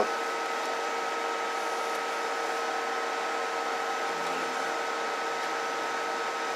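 Steady fan-like hiss with a faint, even high whine from the electronics test bench's running equipment.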